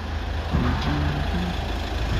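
Delivery truck engine idling: a steady low rumble.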